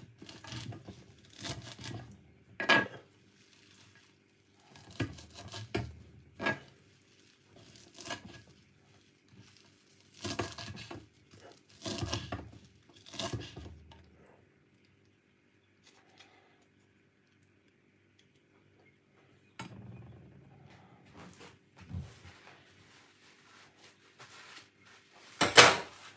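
Kitchen knife chopping fresh coriander and parsley on a wooden cutting board: irregular clusters of sharp knocks as the blade strikes the board. The knocks stop for several seconds about halfway, then resume more softly.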